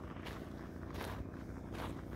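Faint footsteps on a gravel dirt road at a walking pace.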